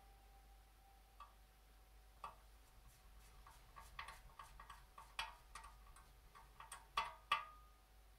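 Light clicks and taps of small metal parts being worked on a metal body frame panel: a small screwdriver and tiny screws knocking against the frame. The taps start about a second in, come more often as it goes on, and end with two louder clicks near the end.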